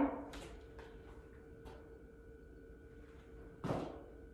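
Quiet room with a faint steady hum; a few faint taps and, near the end, one short scuffing sound as a person steps through from one lunge into the other on a rubber gym floor.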